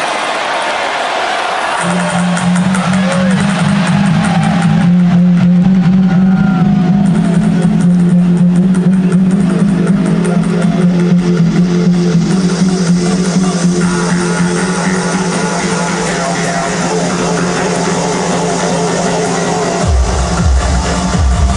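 Loud live electronic dance music over an arena sound system with a crowd cheering. About two seconds in, a deep held bass note enters and sustains under the track to the end.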